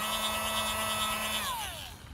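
A small electric motor whirring: it spins up with a rising whine, runs at a steady pitch for about a second and a half, then winds down with a falling pitch.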